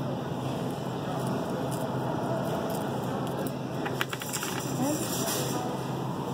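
Steady room noise from the florist's workroom with soft handling sounds, as hands bend and wire the corsage stems. There is a sharp click about four seconds in, then a short stretch of crackling.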